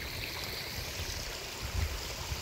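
Steady trickle of running water from a backyard koi pond's waterfall, with a soft low thump near the end.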